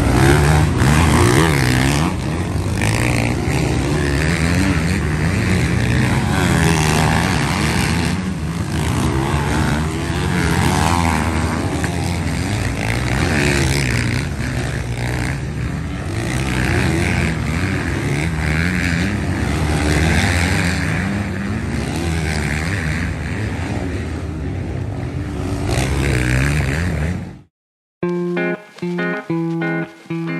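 Several motocross bikes racing on a dirt track, their engines revving up and down as they accelerate out of corners and over jumps. About 27 seconds in the sound cuts off and guitar music starts.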